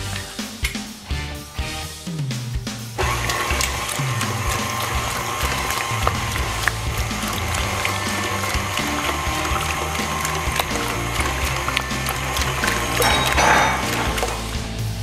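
Background music, and about three seconds in a KitchenAid stand mixer starts and runs steadily under it, beating batter in its steel bowl.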